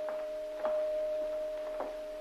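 A single held note of the music score, with evenly spaced footsteps at a walking pace beneath it.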